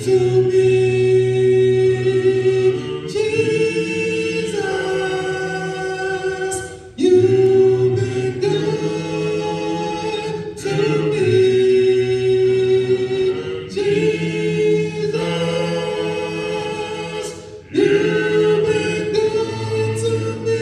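A congregation singing a hymn a cappella in several-part harmony, in long held phrases with brief breaks between lines.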